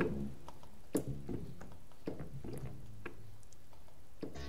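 Faint low synth bass notes being tried out one at a time, with scattered light clicks from the mouse and keyboard keys in between.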